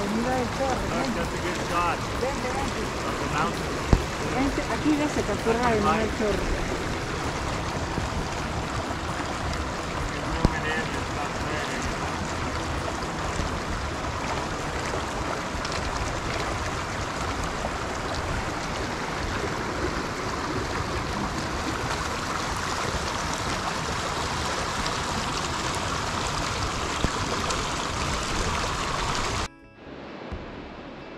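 Small mountain stream rushing over rocks: a steady wash of water sound that cuts off suddenly just before the end.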